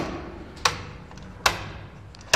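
Schneider Electric molded-case circuit breaker handles being switched by hand, giving three sharp clicks under a second apart.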